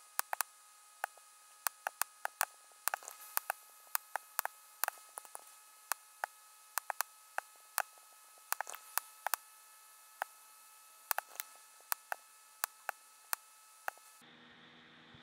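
Irregular sharp clicks of a computer mouse and keyboard, some singly and some in quick runs, over a faint steady hiss.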